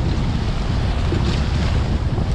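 Strong wind buffeting the microphone in a steady low rumble, over the wash of surf.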